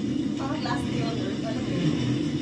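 A steady low rumble, with a few faint spoken words about half a second in.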